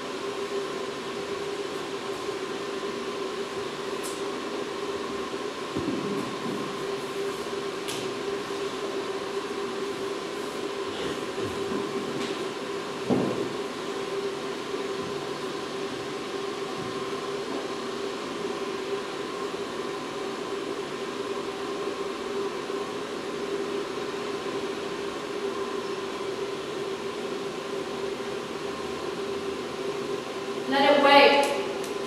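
A steady droning hum holding two even tones under a wash of noise, with a few faint clicks and a soft knock about thirteen seconds in.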